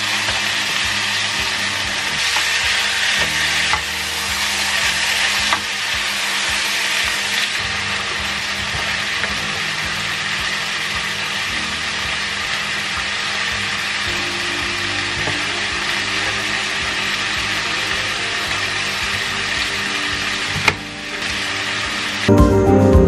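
Garlic and onion frying in butter in a pan: a steady sizzle, with a single short knock near the end.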